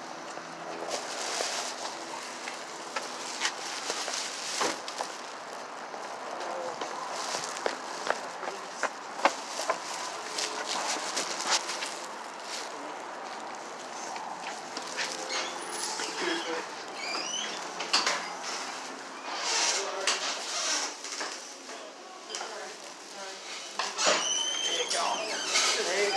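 Rustling and knocking of a phone being handled against clothing, with indistinct voices in the background.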